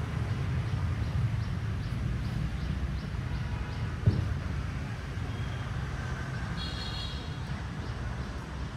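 Steady low rumble of distant city traffic, with a single thump about four seconds in.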